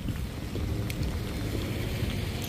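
Wind rumbling on the microphone, with a faint tick about a second in.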